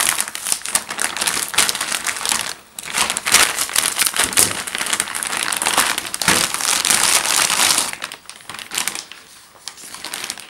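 Plastic packaging and bubble wrap crinkling and crackling as a tripod is pulled out of it, with a brief pause about two and a half seconds in, then dying down to scattered crackles near the end.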